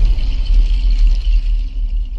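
Deep, steady bass rumble of an intro sting's sound design, with a faint high shimmer over it.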